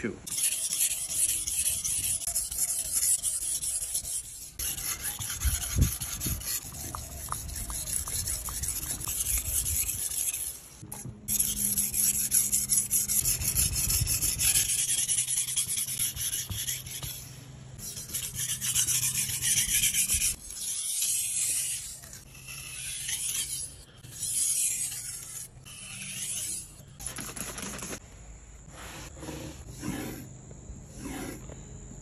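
Kiritsuke kitchen knife blade stroked back and forth on a whetstone: a gritty scraping in runs of rapid strokes with short pauses between them. In the last few seconds it turns to softer, quieter passes of the blade over a strop.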